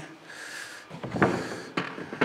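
Handling knocks as a long aluminium clamp-on straight-edge saw guide is moved and set down on plywood siding pieces: a light rustle, then two short sharp knocks about a second and a second and a half in.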